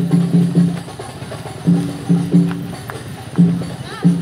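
Large frame-carried barrel drum of a kuda jingkrak parade troupe, beaten in short runs of deep, pitched strokes: four quick strokes at the start, three around the middle, and two near the end.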